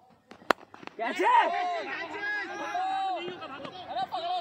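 A single sharp crack of a hard leather cricket ball struck by a bat, about half a second in. Several men shouting and calling on the field follow it.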